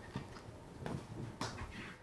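A few faint knocks and rustles, about three in two seconds, as a person scrambles across a wooden floor.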